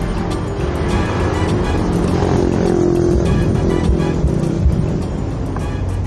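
Road traffic running close by, cars and motorcycles on a busy city street, under background music with a steady beat.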